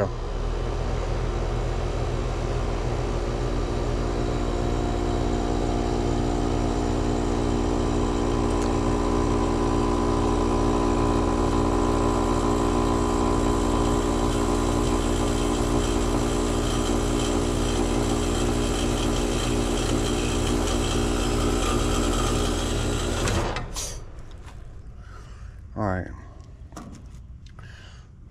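Air-conditioner condensing unit with compressor and condenser fan running, a steady hum. It shuts off abruptly about 23 seconds in as the suction pressure collapses: the unit trips on low pressure, which the technician suspects is the TXV starving the system.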